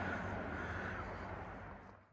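Faint outdoor background noise, an even low hiss with no distinct events, fading out gradually toward the end.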